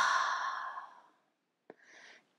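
A woman's long, breathy open-mouthed exhalation through a narrowed throat, the whispered 'haaa' of ujjayi breathing, like fogging a glass. It fades out about a second in. Near the end come a small mouth click and a short, faint breath in.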